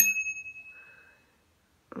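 Small chrome dome bicycle bell struck once by its thumb lever: a single bright ding that rings on and fades away over about a second.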